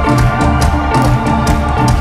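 Live rock band playing loud through a PA: drums strike steadily under sustained guitar, bass and keyboard notes, heard from within the crowd.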